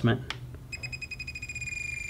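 Radio-control transmitter beeping: a rapid run of short, high electronic beeps starting about two-thirds of a second in, as a menu value (the elevator's travel adjustment) is stepped down with the key held.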